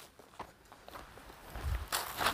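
Footsteps of a man and a young sheep walking over dry ground: light scattered steps, with a heavier thud near the end.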